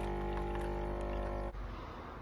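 Lavazza Firma capsule coffee machine's pump humming steadily as it dispenses coffee into a cup. The hum stops abruptly about one and a half seconds in, leaving faint room noise.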